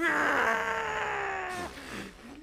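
A young man's crying wail: one long, slowly falling cry that breaks off about one and a half seconds in.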